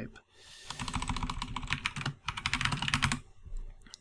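Typing on a computer keyboard: a quick, dense run of keystrokes starting a little before a second in and lasting about two and a half seconds.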